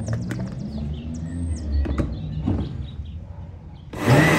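A few light clicks and knocks as a plastic blender jar's lid is fitted and the jar is set on its motor base, with birds chirping. The blender motor starts right at the very end.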